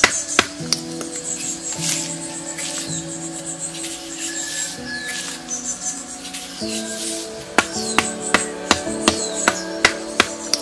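Background music with steady held notes, over which a hand-held stone knocks against a wooden stick on a rock: a couple of knocks at the start, then a run of about three knocks a second in the last two or three seconds.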